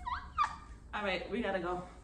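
Wordless vocal sounds: two quick rising whoops near the start, then a warbling vocal sound from about a second in.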